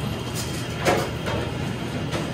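A steady low mechanical rumble from machinery in the shop, with a brief short sound about a second in.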